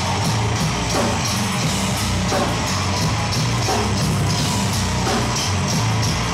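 Heavy hardcore band playing live: distorted electric guitar and bass chugging over a pounding drum kit, loud and dense throughout.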